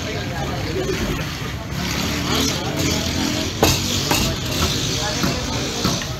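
A large batch of lassi being churned with a tall wooden churner spun by hand in a steel pot, against steady street-stall noise of voices and traffic. Two sharp clicks come a little past halfway.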